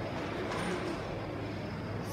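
Steady low hum and background noise of a large indoor hall, with faint distant voices about half a second in.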